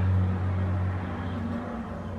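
A steady low droning hum that fades a little over a second in.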